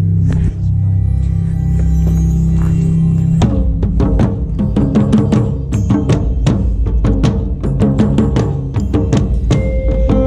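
Marching band front ensemble playing: held low keyboard chords, then from about three and a half seconds in, a busy run of mallet-percussion and drum strikes over the sustained tones.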